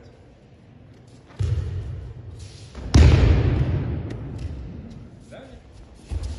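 Two heavy thuds of a body landing on a training mat, about a second and a half apart, the second louder, each dying away slowly in the echo of a large hall.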